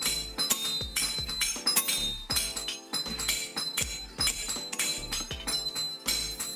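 Hand hammer blows clinking and ringing on iron at the anvil, struck in quick irregular succession, under background music.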